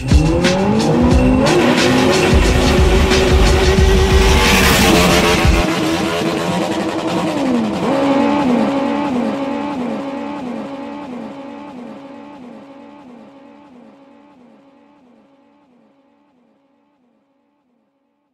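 A revving, engine-like sound rising and falling in pitch over loud music with a heavy bass. The bass cuts off about five seconds in, and the revving pattern repeats like an echo, fading away by about sixteen seconds.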